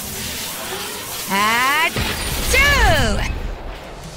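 Two short wordless vocal sounds over a light music bed: a briefly held, slightly rising one, then a louder exclamation that falls steeply in pitch.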